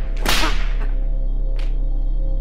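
Whip lashes: one loud crack-and-swish a little after the start, a fainter swish about one and a half seconds in, over a steady low drone.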